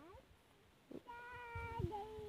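A person's voice singing a long held note, beginning about a second in and stepping down in pitch near the end, faint.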